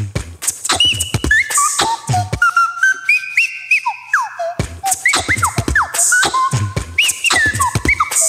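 Whistled tones and short rising-falling chirps, several layered at different pitches on a loop station, over a looped beatbox beat of kick thumps and sharp clicks. The beat drops out from about two and a half to four and a half seconds in, leaving only the whistles, then comes back in.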